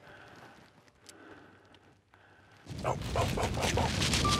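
Quiet at first, then about two-thirds of the way in a burst of loud scuffing and rustling begins: a hunter's clothing and pack brushing and scraping against rock as he climbs over a rock outcrop.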